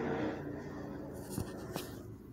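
Faint handling noise from the recording phone being moved: a light rustle with two small clicks near the end.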